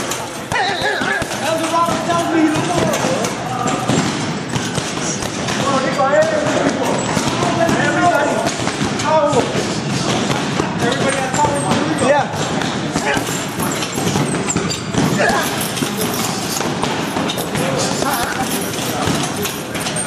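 Boxing gloves punching a heavy bag: repeated thuds and slaps in combinations, over gym voices and background music.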